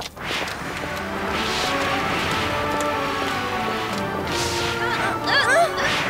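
Cartoon magic sound effects: a click, then swelling whooshes recurring every second or few, and twinkling, curling glides near the end. These play over a music score of sustained held notes.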